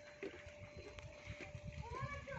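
Faint distant voices of people, over a steady faint hum.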